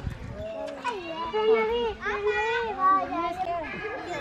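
Young children's high-pitched voices calling out and chattering while they play, the sounds rising and falling in pitch.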